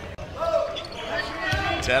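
Basketball being dribbled on a hardwood gym court, with a few dull bounces under voices in the hall.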